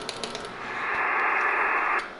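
Rapid, even clicking at about ten a second dies away in the first half second. Then a narrow-band hiss of HF radio-transceiver static swells up, holds, and cuts off abruptly at the end.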